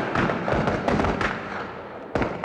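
Battle sound effect of rifle gunfire: many shots crack in quick, irregular succession and overlap with their echoes, easing off a little near the end.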